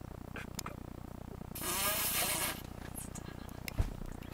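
A stifled, breathy giggle lasting about a second midway, over a low steady hum; a soft click and thump near the end.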